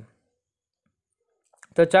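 Dead silence for about a second and a half, then a few faint clicks just before a man's voice comes back in.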